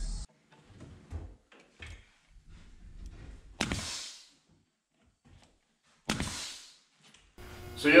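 Pneumatic brad nailer firing twice into wooden trim, each a sharp shot followed by a short hiss of air, the second about two and a half seconds after the first. Faint handling clicks come before the first shot.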